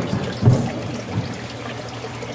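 Water trickling steadily into a terrapin tank, over a constant low hum. There is a short louder burst about half a second in.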